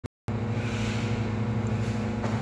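Steady low hum with a constant hiss, starting after a split-second dropout at the very start.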